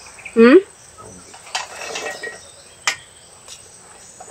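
A short hummed "mm" with a rising pitch about half a second in, then two light clicks of a metal spoon against a plate, over a steady high insect chirr.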